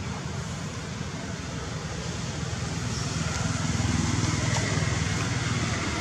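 A motor vehicle engine running nearby, a steady low rumble that grows louder about four seconds in, as if drawing closer.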